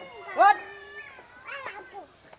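Young male voices: a sharp shout of "uth" ("get up") about half a second in, over a drawn-out high cry that slides slightly down in pitch and stops after about a second, followed by more short shouts.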